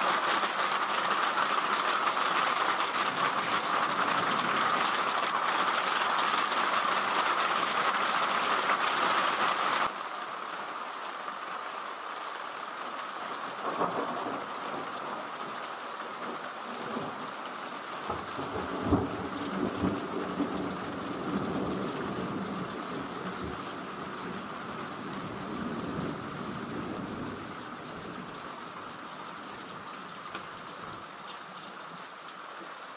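Heavy rain mixed with small hail beating down in a loud, even hiss. About ten seconds in it changes to a somewhat quieter downpour, and thunder rumbles low through much of the second half.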